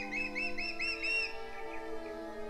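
A bird chirping, a quick run of about six short arched chirps that stops about a second and a half in, over held string-like musical tones.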